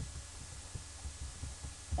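A low, uneven hum from the recording microphone, with a few faint computer-keyboard taps as code is typed.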